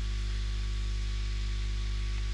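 Steady electrical hum with low buzzing overtones under an even hiss: the recording's microphone noise floor between narration.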